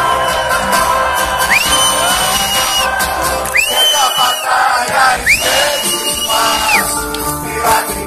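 A live band playing with no singing, over a cheering crowd. Three long high whistles rise, hold and drop off, one after another.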